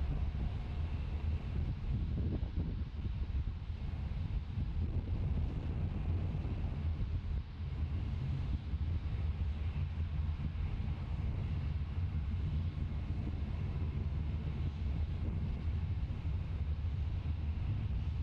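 Steady low rumble of the Falcon 9 first stage's nine Merlin engines in full burn, heard from the ground far below, with a brief dip about seven and a half seconds in.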